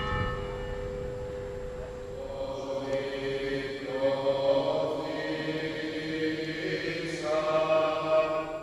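Male voices in a Greek Orthodox church chanting a slow hymn with long held notes. Over the first couple of seconds the ring of a church bell dies away under the chant.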